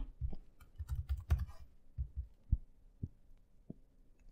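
Computer keyboard being typed on: a short run of irregular keystrokes as a single word is typed, each a soft click with a dull thud under it.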